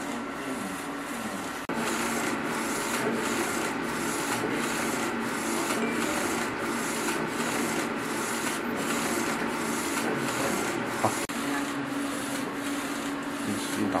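Airwren LED UV flatbed printer running a print job, its printhead carriage shuttling back and forth over the bed: a steady mechanical swishing with an even pulse about twice a second.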